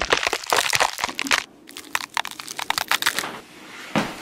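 Quick, irregular crackling and rustling with sharp clicks from a rubber costume and cloth coat moving about. There is a brief lull about a second and a half in, and it quietens near the end.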